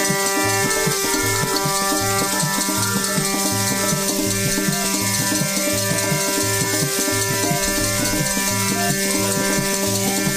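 Kirtan instrumental: a harmonium holding sustained notes over a steady dholak drum beat, with chimtas (long fire tongs fitted with metal jingles) shaken in rhythm for a continuous jingling.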